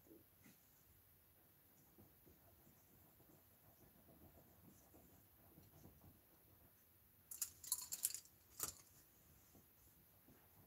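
Small, sharp clicks and a brief clatter of a paintbrush against a plastic paint tray and the worktable, bunched together about seven and a half seconds in, with one more click about a second later. Otherwise near silence.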